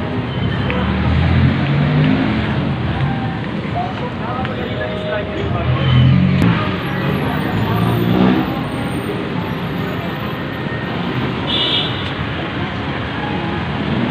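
Busy city-street traffic: cars, jeepneys and motorcycles running and passing close by in a steady rumble, with indistinct voices of passers-by mixed in.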